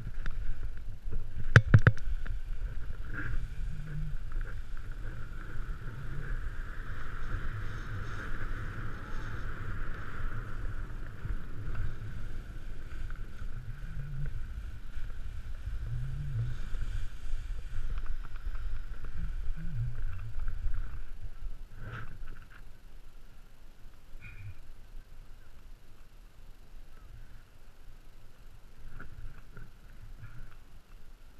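Snowboard sliding and turning through powder snow, a continuous swishing hiss over a heavy rumble of wind on the microphone. A couple of sharp knocks come about two seconds in, and the sound drops noticeably in level at around 22 seconds as the ride slows.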